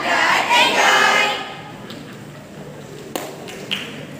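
A group of students' voices sounding together in unison, breaking off about a second and a half in, then two short knocks near the end.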